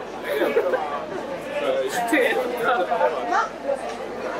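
Several people chatting, voices overlapping close to the microphone.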